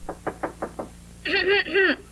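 Five quick knocks on a door in under a second, followed by a voice calling out two drawn-out syllables.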